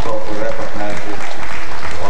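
Audience clapping while a man keeps talking over a microphone.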